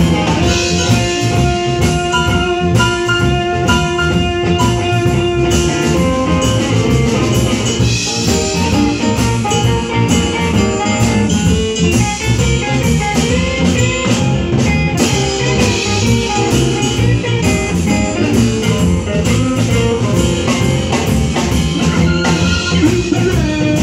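Live band playing an instrumental passage with electric guitar, electric bass, keyboard and drum kit over a steady beat. A long held note sounds through the first six seconds or so.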